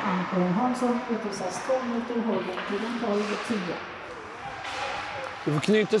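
Indistinct talking, with a quieter stretch around four seconds in and a louder voice starting near the end.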